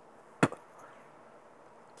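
A single sharp click about half a second in, otherwise a pause with only faint room tone.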